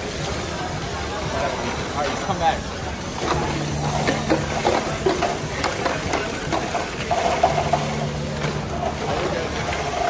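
Background chatter of voices in a gymnasium. A low steady motor hum comes in twice, each time for about a second and a half, from VEX competition robots driving on the field.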